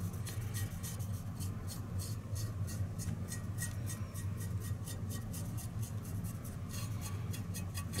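A paintbrush scrubbing wet paint and thinner into a textured model cobblestone surface, short scratchy strokes several a second, over a steady low hum.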